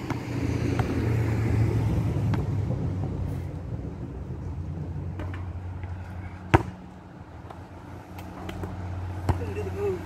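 A passing car's engine, a low hum that is loudest in the first couple of seconds and fades away by about seven seconds in. Over it come a few sharp knocks of a basketball on the asphalt court and the hoop, the loudest about six and a half seconds in, as the shot reaches the rim.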